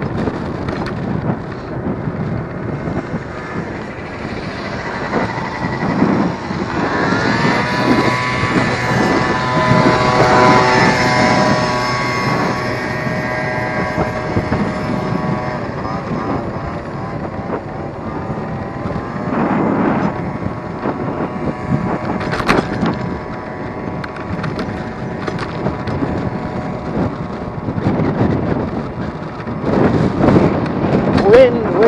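Electric scooter riding along a road in traffic: steady wind rushing on the microphone with road and traffic noise. A steady whine of several tones rises about seven seconds in and fades out by about seventeen seconds, and a couple of sharp knocks come a little after twenty seconds.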